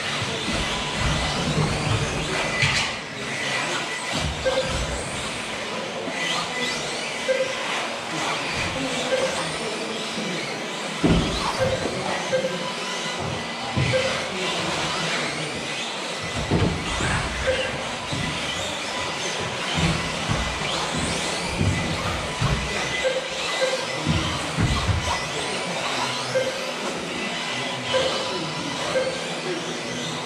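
Several 1/10-scale electric two-wheel-drive off-road buggies racing, their motors whining up and down in pitch as they speed up and slow down, with occasional knocks.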